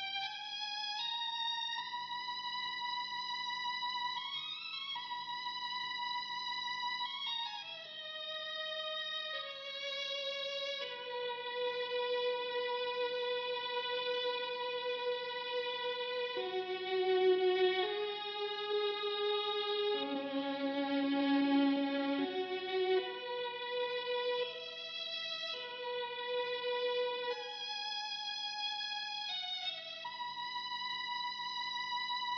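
Mellotron MkII 'Violins 1' tape-bank strings, played through GForce's M-Tron software. A slow solo melody of long held notes, mostly one at a time with a few chords in the middle, EQ'd and washed in plate and hall reverb.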